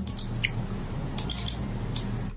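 A few light clicks from a computer mouse or keyboard, a small cluster about a second in, over steady room hiss and a low hum.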